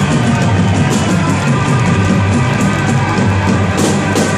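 Live rock band playing loudly, with drum kit and electric guitar.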